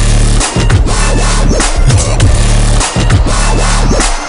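Loud electronic music with a heavy, pulsing bass line and a strong beat, briefly dropping out twice.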